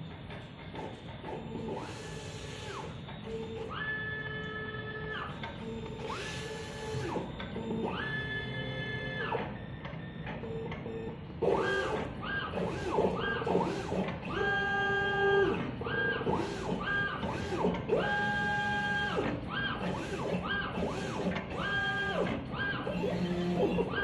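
A3 die sheet cutter at work: its motors whine in repeated tones that rise, hold and fall as the cutting head and feed rollers move. The whining comes faster and louder from about halfway through.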